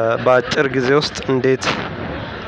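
A man's voice speaking in Amharic, loud and close.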